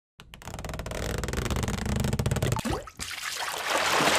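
Sound effects for an animated intro logo: a fast, dense crackle of ticks that grows louder, a short rising whistle, a brief drop-out about three seconds in, then a rushing swell that builds toward the intro music.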